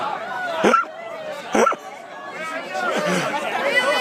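A group of people chattering and calling out, with two short loud cries about a second apart.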